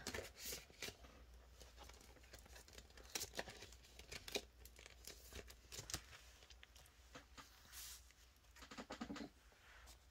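Near silence with a few faint, scattered rustles and light taps of paper banknotes and a plastic binder pouch being handled.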